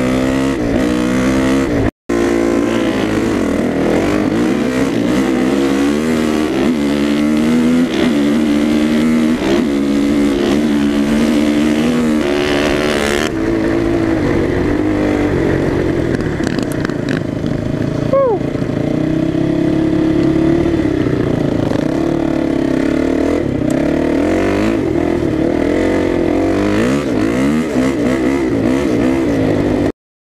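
Dirt bike engine at speed, rising and falling in pitch again and again as it is revved and shifted through the gears, with wind rushing over the microphone. About halfway through it settles into a steadier run, and a second dirt bike passes the other way, its pitch falling as it goes by.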